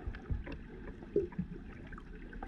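Underwater ambience picked up by a submerged camera: a low, uneven water surge with a few dull knocks, and scattered sharp clicks throughout.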